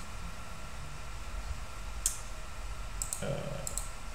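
Computer mouse clicks. There is a single sharp click about two seconds in, then a quick run of three or four near the end, over a faint steady hum.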